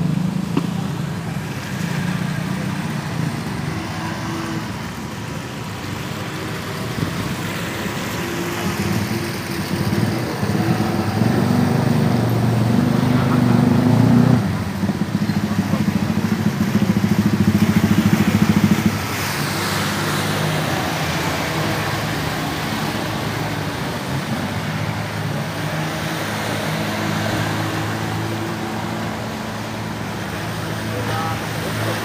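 Small outboard motors on inflatable boats running on the water, the engine note holding steady and then rising in two louder spells through the middle before easing back.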